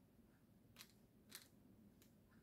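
Near silence: room tone with two faint, short clicks a little over half a second apart, about a second in.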